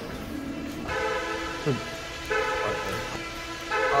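A man's voice in a few long, held shouts, some ending in a falling pitch, echoing in an underground car park. He yells like this to shake off his nerves.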